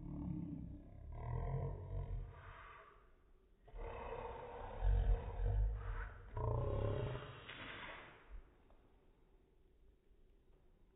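Human voices slowed down so they sound deep and drawn out, in two long stretches, the second starting a little under four seconds in.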